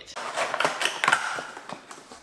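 Large cardboard shipping box being cut open with a knife, with a rapid run of scraping and ripping noises as the blade slits the tape and cardboard.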